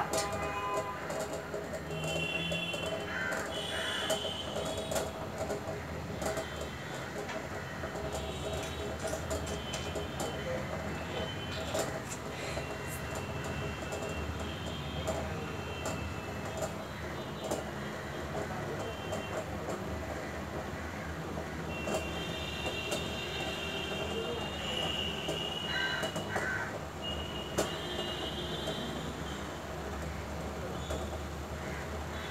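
Lit gas-stove burner running with a steady low rumble and hiss. Brief high, squeaky tones come in twice, a couple of seconds in and again near the end.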